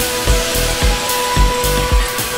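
Electronic synth-pop music played mostly on a Novation Mininova synthesizer. A steady kick drum beats about twice a second under a synth bass and held synth notes, with a hissing noise layer on top.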